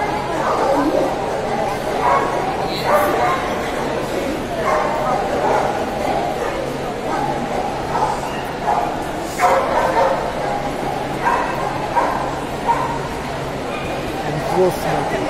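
Dogs yipping and whimpering in short, scattered calls over steady crowd chatter.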